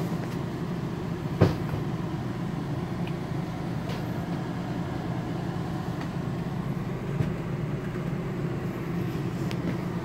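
A steady low mechanical hum, with a sharp knock about a second and a half in and a fainter one later.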